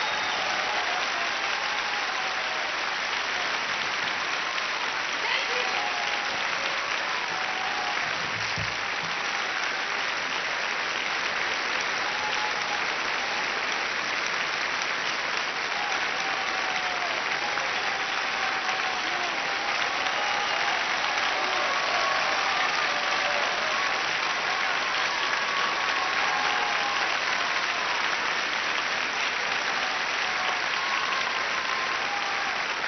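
A large theatre audience applauding steadily at the end of a song, with a few voices calling out above the clapping. The applause swells slightly about two-thirds of the way through.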